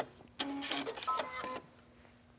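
Electric sewing machine running for about a second as it stitches the end of a quilting row, a steady motor whine, then stopping.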